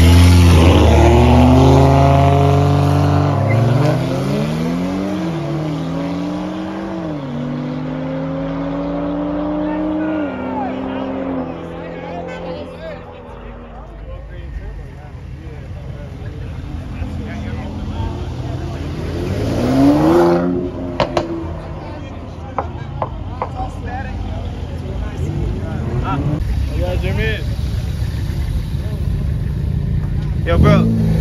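A car engine accelerating hard from a standing launch: its pitch climbs, falls back at upshifts about 5, 7 and 10 seconds in, then fades as the car pulls away. Later a second engine sweep rises and falls, loudest about 20 seconds in, like a car accelerating past.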